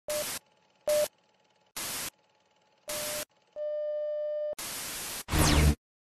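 Television static and test-tone sound effect: four short bursts of hiss, some with a beep in them, a steady test-tone beep for about a second, then more static and a loud final burst with a falling whistle and low rumble that cuts off suddenly.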